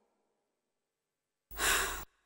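Silence, then about one and a half seconds in, a woman sighs once, a short breathy exhale lasting about half a second.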